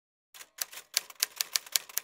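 Typewriter-style typing sound effect: a fast, uneven run of sharp key clicks, about six a second, starting about a third of a second in.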